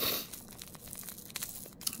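Small clear plastic bag of loose nail-art glitter crinkling and rustling as fingers squeeze and turn it, loudest right at the start.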